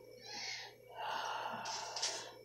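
A person's breathy exhalations with no voice in them: a short puff of breath, then a longer airy breath out that grows brighter near the end, like a soft breathy laugh.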